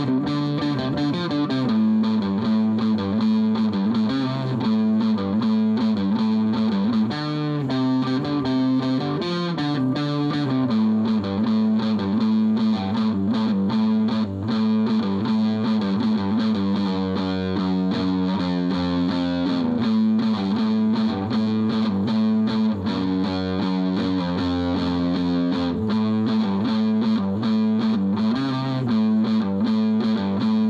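Electric guitar played loud with distortion through a small Fender practice amp: sustained chords held for a second or two, then changing, in a loose, unpolished jam.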